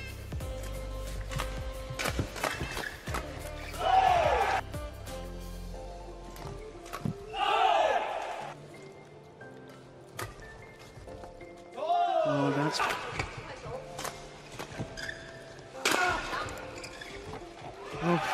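Badminton doubles rallies: sharp racket hits on the shuttlecock, shoes squeaking on the court in short arching glides, and short shouts from the players.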